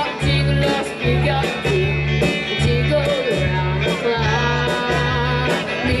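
Live amplified band music: a young singer with guitar, over a bass line that pulses about twice a second.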